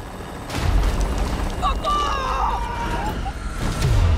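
A sudden loud boom about half a second in, followed by a deep continuing rumble as the aircraft cabin is jolted, with people crying out over it. A second heavy low rumble, with a falling tone, comes near the end.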